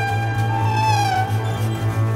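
Contemporary music for large ensemble and electronics. A sustained high tone bends up and then slides down about a second in, over a steady, pulsing low drone.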